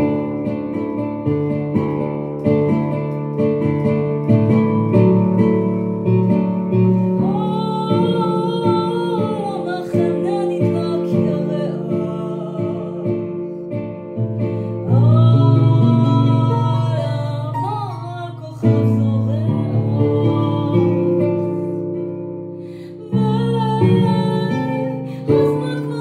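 A woman singing a slow song while accompanying herself on a digital keyboard with a piano sound, holding sustained chords. Her voice comes in about eight seconds in and again around fifteen seconds, over fresh chords.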